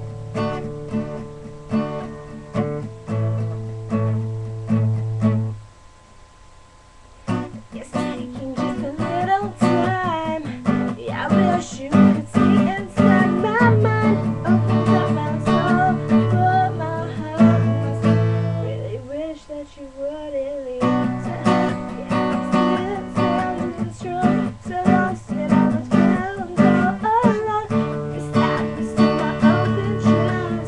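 Acoustic guitar strummed with a woman's solo singing voice. The guitar plays alone at first and pauses briefly about six seconds in, then the singing comes in over the strumming; around twenty seconds in a held, wavering vocal note carries on almost alone before the strumming resumes.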